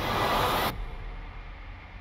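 Movie-trailer sound design: a loud rushing noise for about the first two-thirds of a second that cuts off abruptly, leaving a low rumble that slowly fades.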